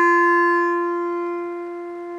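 Hmong bamboo flute holding one long, steady note with a bright, reedy tone that slowly fades near the end.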